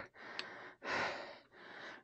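A man breathing heavily, out of breath: three breaths in quick succession, the middle one the loudest.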